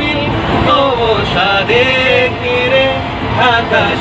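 Men singing a song together with held notes, over the steady running noise of a moving passenger train carriage.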